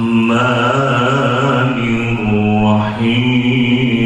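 A man's voice reciting the Quran in Arabic, chanted melodically in long held notes that waver and glide in pitch, amplified through a handheld microphone.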